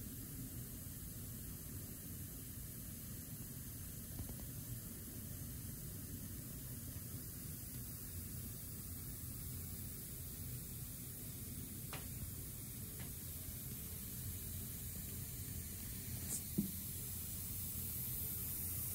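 Steady faint hiss of compressed air from the pneumatic lines and solenoid valves of the filling machines, over a low hum. The hiss grows slightly toward the end, and there are a couple of faint clicks.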